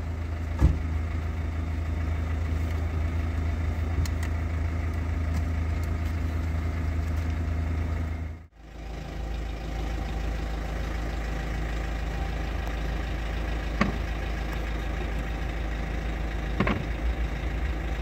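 Car engine idling with a steady low hum. The sound cuts out briefly about halfway through and then resumes, and there are a few faint knocks near the end.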